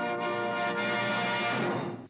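Music: one held chord that starts suddenly and dies away near the end.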